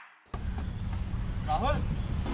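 The tail of a song fades out, and after a short gap a steady low outdoor rumble comes in with a thin high whine over it. A person's voice starts about a second and a half in.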